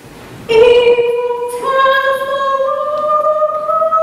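A woman singing solo and unaccompanied. After a brief pause she comes in about half a second in and holds long notes that climb step by step in pitch.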